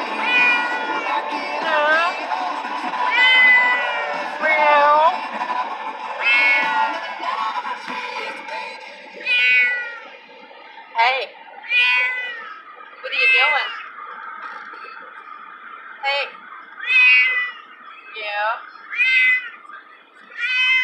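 Domestic cat meowing over and over from inside a plastic pet carrier, over a dozen drawn-out meows, each rising and falling, one every second or two: the protest of a cat that hates riding in the car.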